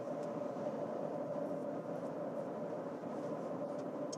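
Steady road noise inside the cabin of a 2024 Toyota RAV4 driving along a city street, with a faint steady hum.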